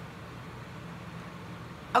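Quiet room tone with a faint steady low hum and no speech or music.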